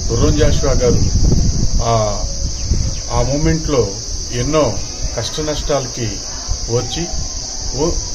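A man talking continuously, over a steady, unbroken high-pitched insect chirring, like crickets.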